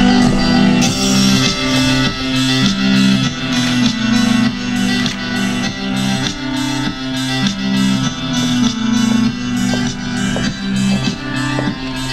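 Music with a steady beat over a repeating bass line.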